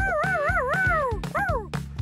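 A cartoon puppy's voice howling excitedly in one long, wavering call that falls away at its end, followed by a short falling yelp, over upbeat background music.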